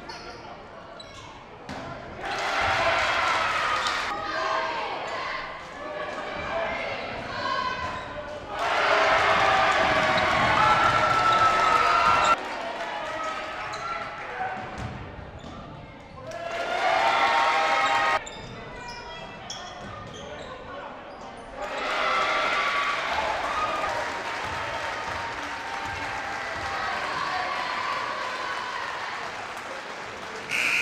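Basketball dribbled on a hardwood gym floor, with players and spectators shouting in a large, echoing gym. The sound changes abruptly several times.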